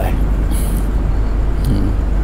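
Steady low background rumble in a pause between a man's words, with a short hiss about half a second in.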